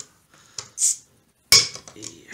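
A short breathy hiss, then a single sharp knock with a brief ring about one and a half seconds in, as a glass beer bottle is handled on the tabletop.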